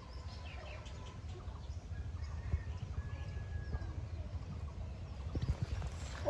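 Outdoor ambience: a steady low rumble with faint, distant bird calls, including a thin held whistle about three seconds in. A few soft clicks come near the end.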